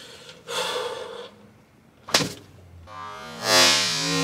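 A sharp breath, then a single thunk as a thin metal baking sheet is struck against a head, about two seconds in. Music starts soon after and swells near the end.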